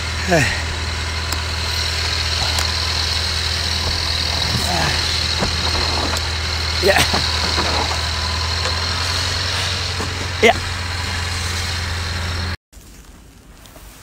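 Car engine idling steadily with a low hum and a thin high tone above it, while a snow brush scrapes across the snow-covered car in a few short strokes. The engine sound cuts off sharply near the end.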